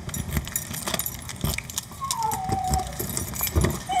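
Keys jangling and clicking in a front-door lock as it is unlocked. About two seconds in, a dog inside gives one high, falling whine lasting under a second, reacting to the key in the door.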